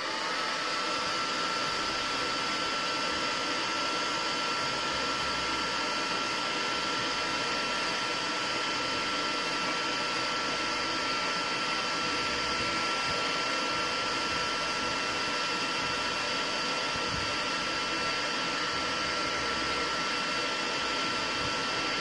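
Handheld hair dryer running steadily on one setting, warming a tin of wax pomade to soften it. Its rush of air carries a thin, steady high whine from the motor.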